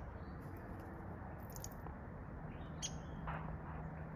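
A few faint, short, high bird chirps over a quiet outdoor background.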